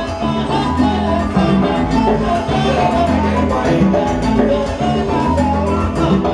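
Live salsa band playing, with hand drums and bass over a steady beat.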